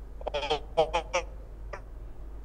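A man's voice coming over a video-call link in a few short, choppy syllables with gliding pitch, then one faint one near the end.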